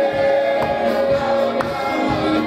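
Gospel worship singing by a group of voices holding long notes over a steady drum beat.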